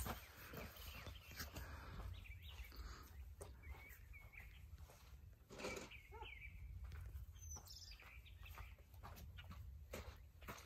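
Faint outdoor quiet with a low rumble of wind on the microphone and a few faint bird chirps, the clearest around the middle.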